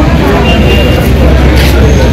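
Loud, steady outdoor background noise with a heavy low rumble, with scraps of voices in it.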